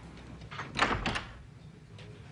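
A door: a short clatter ending in a low thump about a second in.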